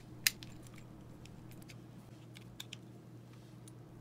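Plastic shell of a Nissan smart key fob being pulled apart by hand: one sharp click as the snap-fit halves come apart, then a few faint plastic clicks and taps as the pieces are handled.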